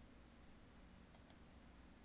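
Near silence: room tone with a faint low hum, and two faint short clicks close together a little past a second in.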